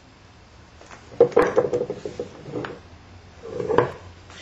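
A stone hammerstone and a flint point being handled and set down on a leather pad: a sharp clack about a second in, then a brief rattle of stone, and another knock near the end.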